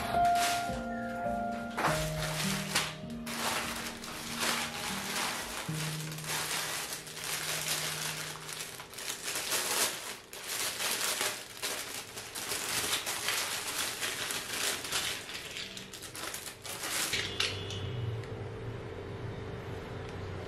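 Background music with soft held notes, over thin plastic packaging crinkling and rustling as it is unwrapped and handled. The crinkling stops a few seconds before the end.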